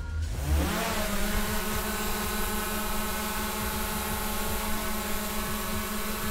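DJI Mavic Air 2 quadcopter's motors and propellers spinning up, the whine rising in pitch under a second in as it lifts off. It then hovers with a steady, even propeller whine.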